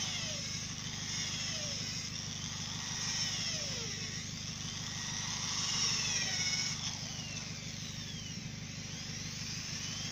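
Corded electric drill boring pilot holes in timber, its whine rising and falling in pitch as the trigger is squeezed and released, over the steady buzz of a small engine running.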